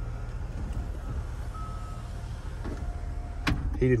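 Steady low hum of the Yukon Denali's V8 idling, heard inside the cabin. Two faint, short electric tones come in the middle, and a sharp click comes about three and a half seconds in.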